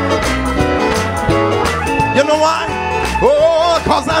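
Live gospel worship music from a band with a strong bass line. About halfway in, a singer joins, holding long notes with a wavering vibrato.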